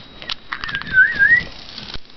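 A person whistling one short, wavering note that dips and then rises, starting about half a second in and lasting about a second, after a few faint clicks.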